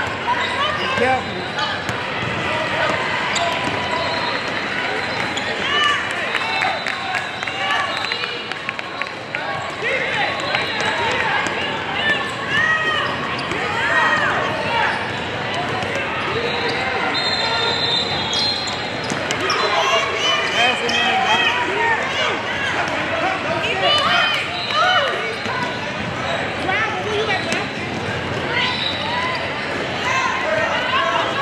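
Basketball dribbling and bouncing on a hardwood court, with short sneaker squeaks and a hubbub of players' and spectators' voices echoing in a large hall.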